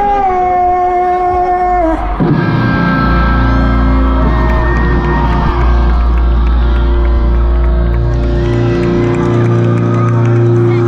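Post-hardcore band playing live through a festival PA, heard from inside the crowd. A held, wavering sung note ends about two seconds in, and the full band comes in with heavy bass and sustained chords.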